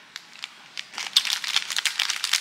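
Plastic snack wrapper crinkling as it is handled, a quick run of sharp crackles starting a little under a second in.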